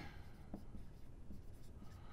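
Blue dry-erase marker writing on a whiteboard: faint strokes of the felt tip rubbing the board as a few letters are written.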